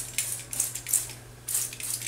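Hand-pump spray bottle misting water onto watercolour paper: several short hissing sprays in quick succession.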